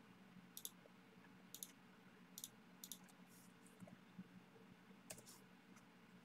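Near silence with about half a dozen faint, scattered clicks of a computer mouse, over a faint steady room hum.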